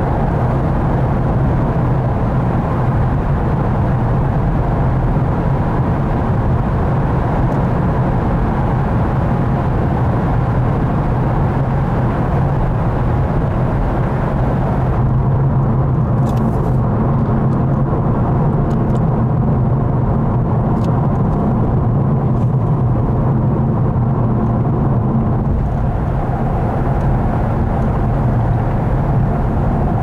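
Steady road and engine noise of a car driving, heard inside the cabin: a constant low drone with tyre hiss. The higher part of the hiss drops away about halfway through.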